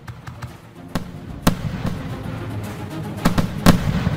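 Fireworks going off over background music: a run of irregular sharp bangs, the loudest about a second and a half in and again near the end.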